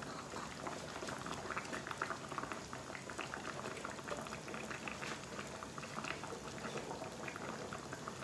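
Goat caldereta in coconut milk simmering in a pan, a steady fine crackle of small bubbles popping. The stew is cooking while the potatoes and carrots soften.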